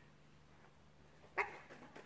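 A single short dog bark about one and a half seconds in, over quiet room tone.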